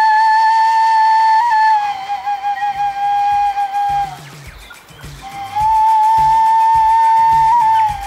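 Music: a flute-like wind instrument holds one long high note, breaks off briefly around the middle, then holds a second long note. Soft low plucked notes come in partway through.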